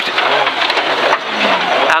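Rally car heard from inside the cabin on a gravel stage: the engine runs under a loud, steady rush of tyre and gravel noise.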